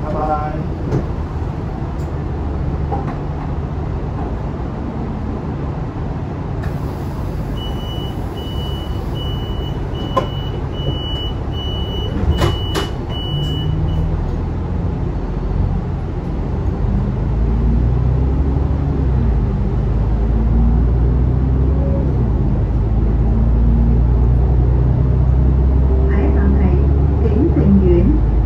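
Alexander Dennis Enviro500 double-decker bus heard from the lower deck: the diesel engine idles at a stop while a door-closing warning beep repeats evenly, a little under twice a second, for about six seconds. A couple of knocks come as the doors shut, then the engine note rises and grows louder as the bus pulls away.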